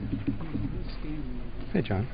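Low, indistinct voices murmuring, not clear enough to make out words, with a brief louder sound near the end.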